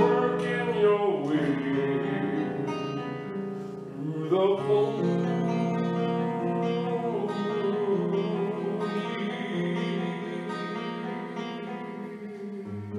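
A man singing a song at the microphone, accompanying himself on a classical guitar.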